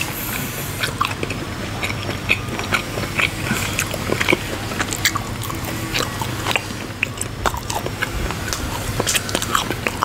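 A person chewing teriyaki turkey jerky close to the microphone, with irregular small clicks and smacks from the mouth.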